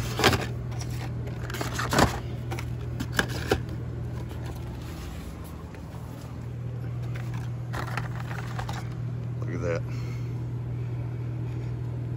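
Carded Hot Wheels packages, cardboard backs with plastic blisters, being flipped through on a peg hook, giving a few sharp clicks and rattles in the first few seconds over a steady low hum.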